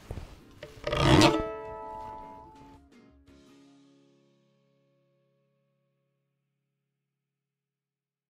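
Pick scraped sharply along a domra's fretboard across the metal frets between the strings: a short scrape at the start, then a longer, louder rasping one about a second in. The open strings ring on after it and fade out over a few seconds.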